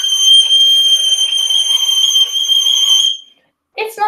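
Violin E string bowed in a very high position near the end of the fingerboard: one very high note held steady for about three seconds, then stopping. A note this high on the E string is really hard to make sound good.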